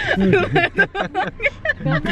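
People talking and laughing inside a car cabin, over a low steady rumble from the car.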